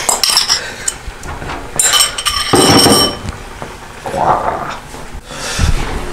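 A metal utensil clinking and scraping against a bowl and a griddle pan as tuna is spooned onto bread, with a ringing clink about two seconds in.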